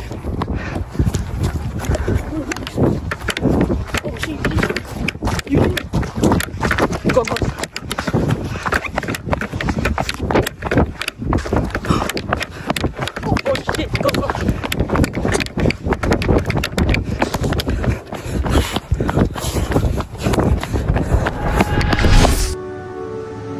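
Rapid footsteps of people running on pavement, with the phone's microphone jostled and rubbed as it is carried.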